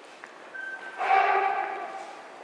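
A short bright chime: a single high tone, then a ringing chord about a second in that slowly fades.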